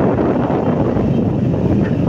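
Steady rumble of a car being driven, heard from inside the cabin: engine and tyre noise with wind noise on the microphone.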